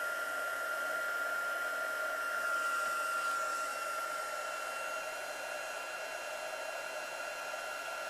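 Handheld craft heat tool blowing steadily with a constant high whine, drying a still-wet watercolour wash on cardstock. It grows a little quieter in the second half.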